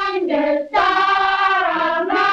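Children's choir singing long held notes, with a brief break about two-thirds of a second in before the next note.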